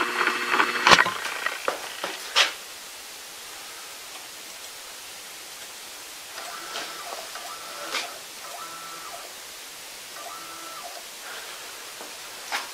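3018 CNC router's stepper motor jogging the spindle down toward the plexiglass in short steps, heard as four brief, faint whines in the second half over a low hiss. A couple of sharp clicks come in the first few seconds.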